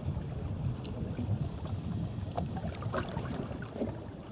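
Wind buffeting the microphone over small waves lapping against shoreline rocks: a steady low rumble with scattered light splashes and clicks of water.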